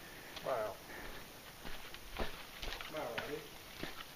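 Faint, untranscribed speech: two short voiced utterances, one about half a second in and one around three seconds in, with a few light clicks in between.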